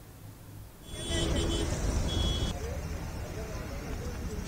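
Street noise with traffic and people's voices, starting abruptly about a second in, with two short high steady tones like beeps early on.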